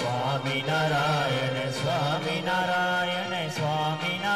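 Devotional chanting sung to a wavering melody over a steady low drone.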